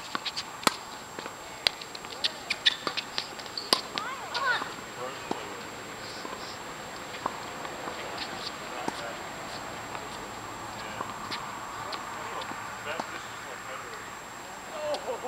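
Tennis balls struck by rackets and bouncing on a hard court: a quick run of sharp pops in the first few seconds, then only a few scattered taps.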